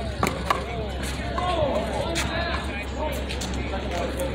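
A small rubber handball struck by an open hand and smacking off a concrete wall: two sharp cracks in quick succession at the start, the second one the louder, and a fainter knock about two seconds in. Background voices and a steady low hum run underneath.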